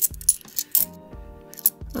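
Bimetallic £2 coins clinking against each other as they are thumbed off a stack held in the hand, four sharp clinks, over steady background music.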